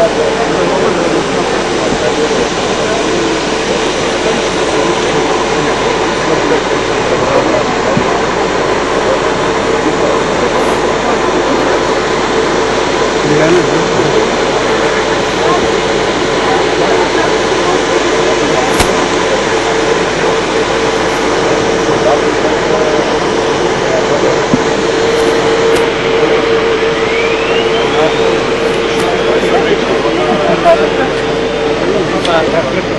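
A steady, loud engine drone with a constant hum holds throughout, under the murmur of a crowd's voices.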